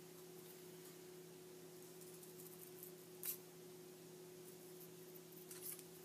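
Scissors snipping paper: one short, sharp snip about three seconds in and a couple of softer ones near the end, over a faint steady hum.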